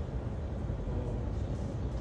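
Airliner jet engines at taxi idle on an airport apron: a steady low rumble.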